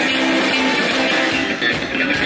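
Live Occitan folk band playing dance music, loud and steady, with held notes and plucked strings.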